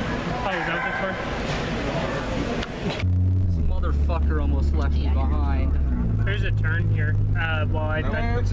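Busy shop background noise with chatter, then about three seconds in a sudden cut to a car's cabin: a steady low engine and road hum as the car is driven.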